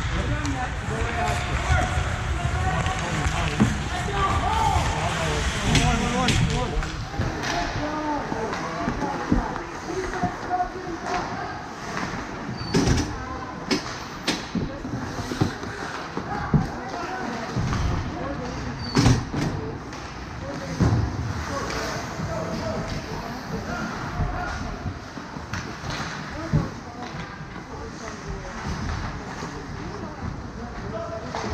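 Ice hockey game sounds: indistinct voices and calls of players and onlookers over the hum of the rink, with several sharp cracks and knocks of sticks, puck and boards scattered through the middle.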